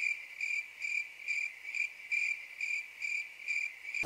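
Cricket chirping, used as a comic 'crickets' sound effect: a steady run of short, high, evenly spaced chirps, a little over two a second.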